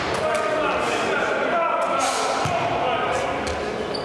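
Men's voices calling out and talking, echoing in a large sports hall, with a few sharp thuds of a futsal ball on the hard floor.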